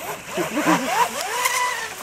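A man laughing, with an electric radio-controlled mono hull speedboat running fast and throwing spray in the background.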